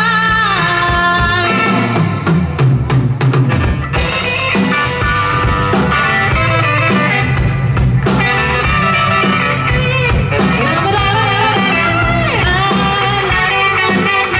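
Live pop-rock band playing: a woman's voice singing over electric guitar, double bass and drum kit, with a saxophone. A quick run of drum hits comes about two to four seconds in, and a note slides down near the end.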